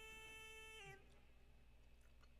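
Near silence: a faint held note with overtones from the cartoon's soundtrack dips slightly in pitch and stops about a second in, leaving faint room tone.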